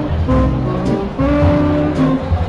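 Live jazz band playing: a horn holds a run of steady notes, each about half a second long, over a bass line.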